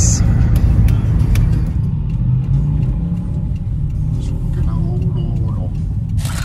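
Steady low rumble of a car cabin on the move: road and engine noise. Faint voices can be heard under it in the middle.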